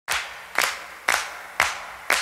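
Four sharp handclaps in a steady beat, about two a second, each dying away quickly: the clap beat at the start of the podcast's intro theme.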